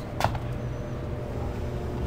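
A single short knock about a quarter second in, then a steady low hum.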